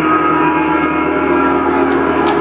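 Round signal at a fight cage: one steady, sustained metallic tone made of several pitches at once, holding without fading.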